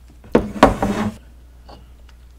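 Wooden chopsticks knocking against a serving dish as they are set down: two sharp knocks about a third and two-thirds of a second in, with a brief rattle after.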